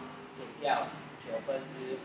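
Speech: a voice talking in short phrases with brief pauses.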